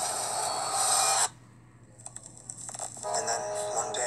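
Trailer soundtrack: dense music and effects that cut off suddenly about a second in, a brief hush with a few faint clicks, then a steady held tone with music rising from about three seconds in.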